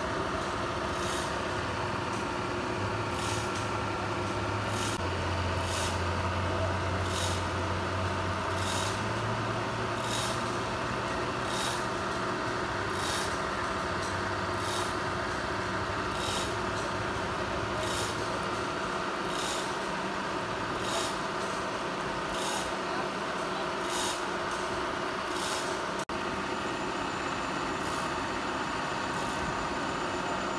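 Komatsu excavator's diesel engine running steadily, its low drone shifting up and down through the first twenty seconds or so, then settling lower. A short high hiss repeats about once a second throughout.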